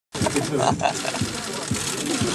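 Camera shutters clicking in quick runs under the chatter of several voices.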